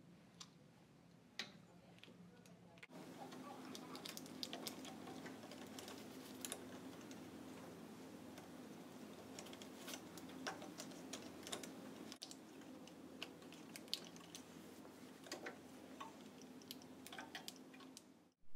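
Faint scattered small clicks and taps of the printhead and its power and data cable connectors being handled and fitted, over a low steady hum that starts about three seconds in.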